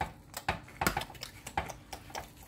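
Irregular short sticky clicks and smacks, about six of them, from a gloved hand patting and rubbing a wet seasoning paste over a raw brisket.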